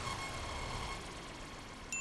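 Subscribe-button sound effect: a fading whoosh dies away, then near the end a sharp click sets off a bright, ringing ding.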